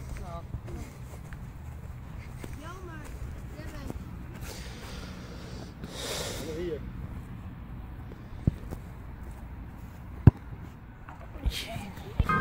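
Sharp thuds of a football being kicked on grass, two of them, the second and louder one about ten seconds in, over wind rumble on the microphone. Faint voices throughout, with a brief shout about six seconds in.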